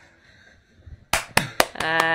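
A quick run of sharp hand claps, starting about a second in.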